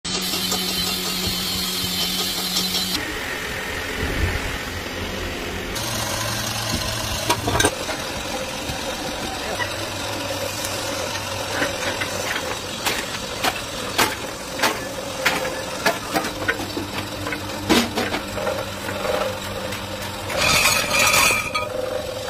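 Workshop noise in an aluminium casting shop: a steady machine hum with scattered sharp metal knocks and clinks, then a short burst of metal clatter near the end.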